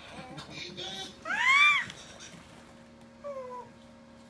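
A one-year-old's high-pitched squeal that rises and falls, about a second in and lasting about half a second, then a softer short falling vocal sound near the end.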